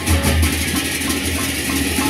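Sasak gendang beleq ensemble playing: a continuous wash of many clashing hand cymbals over a deep drum pulse.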